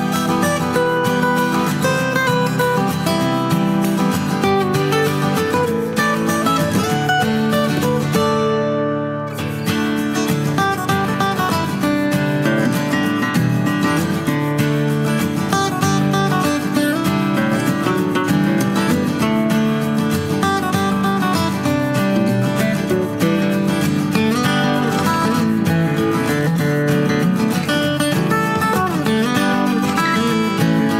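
Background music led by acoustic guitar.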